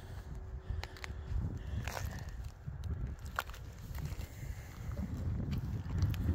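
Footsteps on rough, jagged lava rock, with a few irregular sharp clicks and scrapes of stone, over wind rumbling on the microphone.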